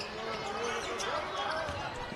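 Basketball arena ambience: a low murmur of crowd voices, with a ball being dribbled on the hardwood court.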